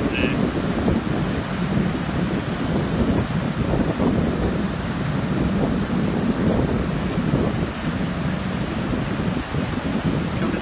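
Ocean surf breaking and washing up the beach, mixed with wind buffeting the microphone as a steady, uneven rumble.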